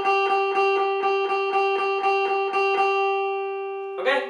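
Jackson electric guitar picking a single note, the 8th fret on the B string, over and over at about four strokes a second. The picking stops about three seconds in, and the last note rings on and fades.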